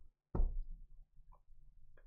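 A single sharp knock about a third of a second in, followed by a few faint clicks and taps: hands handling the contents of an open aluminium briefcase.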